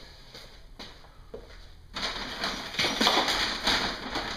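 A few faint knocks, then from about halfway in, brown paper shopping bags rustling and crinkling loudly as they are rummaged through and lifted.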